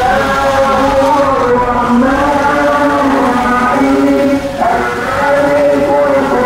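A voice singing or chanting in long, slowly gliding held notes, over the low rumble of a moving car.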